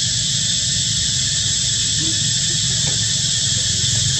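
Steady high-pitched insect chorus that does not vary, over a low background rumble.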